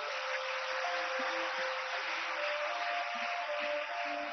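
Audience applause, an even patter of many hands clapping, over instrumental music holding long sustained notes.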